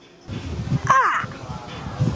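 A single short vocal call about a second in, sliding steeply down in pitch, over a low background rumble.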